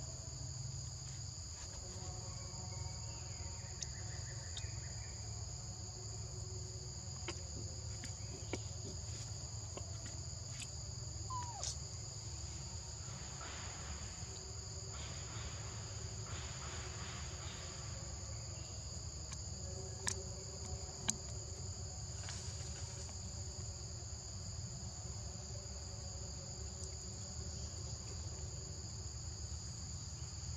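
Steady chorus of forest insects, a continuous high-pitched shrill in two unbroken bands, over a low background rumble, with a couple of sharp clicks about two-thirds of the way through.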